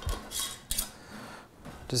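Metal screw-on lids being twisted onto glass mason jars: short scrapes and clinks of metal on glass, mostly in the first second.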